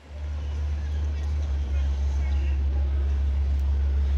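A loud, steady low rumble that starts suddenly and holds throughout, with faint voices in the background.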